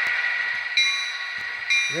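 The DCC sound decoder in an HO-scale Athearn GP35 model diesel locomotive rings its locomotive bell, two strikes about a second apart. The strikes sound over the steady diesel idle coming from the model's small onboard speaker.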